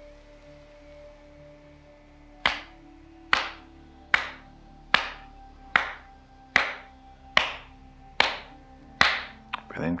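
Hands firmly slapping the top of a person's head nine times, evenly spaced about a second apart, starting a couple of seconds in. This is the 'tapping the roof' qigong exercise. A faint steady music drone sounds underneath.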